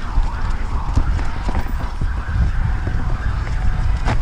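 Downhill mountain bike descending a trail at speed: wind buffets the microphone with a steady low rumble, and the bike keeps up irregular clicks and rattles as the tyres hit roots and rocks.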